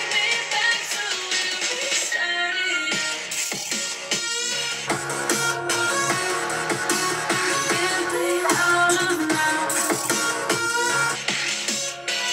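Electronic dance music with vocals, played through a laptop's built-in speakers and thin on bass. The same song is played in turn on a 2015 MacBook Air and a 2020 13-inch MacBook Pro to compare their speakers.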